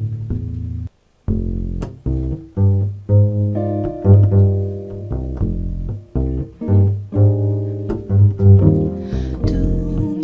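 Upright double bass played pizzicato in a steady walking rhythm with jazz guitar accompaniment. The sound drops out for a moment about a second in.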